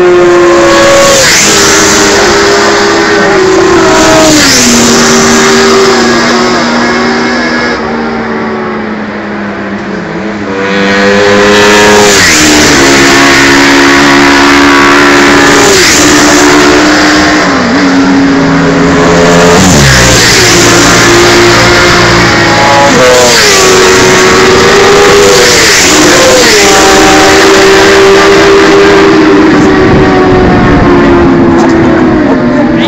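Several racing sport motorcycles running at high revs on a race track. Their engine notes step up and drop with gear changes and fall away as they pass, one after another. The sound dips briefly about a third of the way in, then the next bikes come through loudly.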